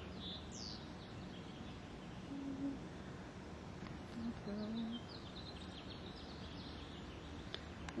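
Small birds chirping and twittering repeatedly over steady background noise, with one quick falling whistle about half a second in.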